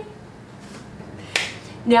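A single sharp finger snap a little past halfway, followed by a woman's voice starting near the end.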